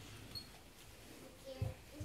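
A pause in amplified speech: faint room tone with a brief high squeak about a third of a second in and a short, soft low sound near the end.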